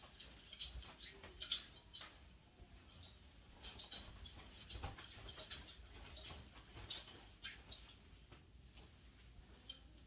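A broadsword spun in figure-eight patterns: a faint, irregular series of short clicks and light swishes from the sword and its handling.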